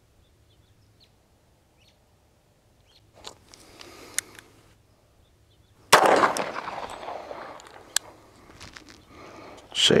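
A single 1911 pistol shot about six seconds in, its report dying away over a second or two. Fainter rustling a few seconds before it, as the pistol is drawn.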